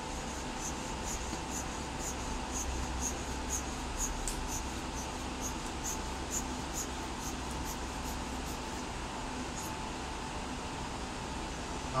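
Rubber bulb air blower squeezed over and over against a small plastic disc filter, giving short faint puffs about twice a second, blowing thinner out of the filter, over a steady background hum.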